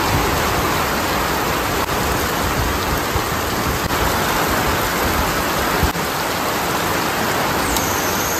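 Heavy rain pouring onto a wet road and puddles: a dense, steady hiss of drops.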